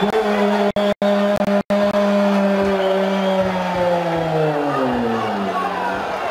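One long, loud held cry on a steady pitch for about five seconds, sliding down at the end, as a goal is celebrated. The sound cuts out completely for an instant three times in the first two seconds.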